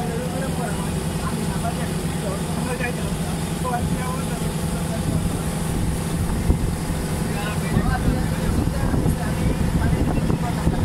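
Passenger water bus's inboard engine running steadily underway, a low even drone, with faint passenger chatter over it.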